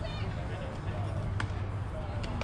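Indistinct background voices over a steady low hum, with one sharp knock a little past halfway.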